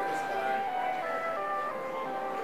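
Background music: a simple tune of clear held notes stepping from one pitch to the next.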